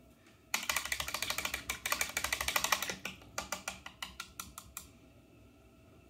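Rapid clicking and clattering of small hard items being handled and rummaged through, as in searching a box of face-painting supplies: a dense run of clicks for a couple of seconds, then sparser single clicks.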